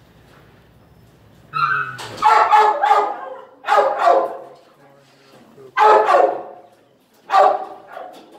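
A dog barking loudly in a shelter kennel, in four bursts of barks spread over the last six seconds, the first a rapid string of several barks.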